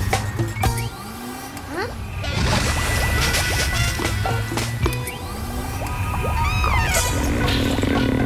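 Cartoon background music with comic sound effects laid over it: quick sliding pitch glides and a few sharp knocks.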